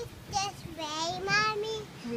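A toddler's high voice in a sing-song call: a short sound, then a longer drawn-out one that slowly rises in pitch.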